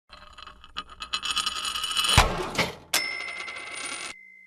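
Short intro sound logo: rapid metallic tinkling that builds up, a sharp hit just after two seconds, and a single bright ding about three seconds in that rings on.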